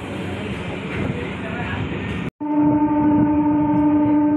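Local passenger train running, an even rumbling noise, which breaks off abruptly about two-thirds of the way through; then a train horn sounds one long steady note, the loudest sound here.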